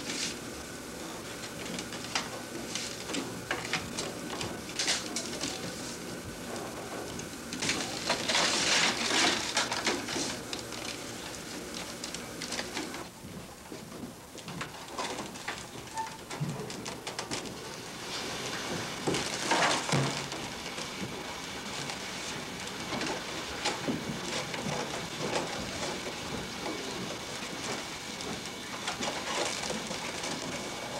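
Dry black ash splints rustling, scraping and clicking as they are handled and woven into a basket. There are two louder scraping passes, about eight and about twenty seconds in.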